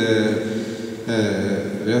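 A man's voice over a microphone, drawn out and hesitant between phrases, with a brief lull about a second in.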